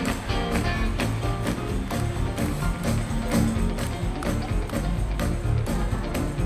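Live band music with a steady drum beat under electric guitar, bass and horns.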